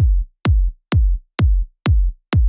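Soloed electronic trance kick drum playing four-on-the-floor at 128 BPM: five hits, each a sharp click that drops fast in pitch into a short low boom, cut off to silence before the next hit.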